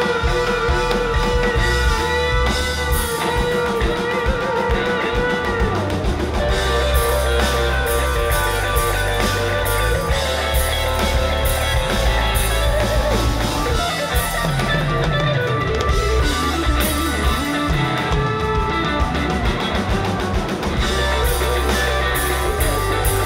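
Live rock band playing an instrumental passage: an electric guitar lead with bending, wavering notes in the first few seconds over a drum kit and heavy low end.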